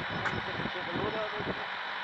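Delivery lorry's engine running steadily, with faint voices in the background.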